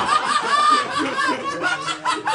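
People laughing in a quick run of short chuckling bursts, about four a second.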